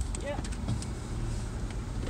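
Car engine and road noise heard inside the cabin: a low, steady rumble with a faint hum.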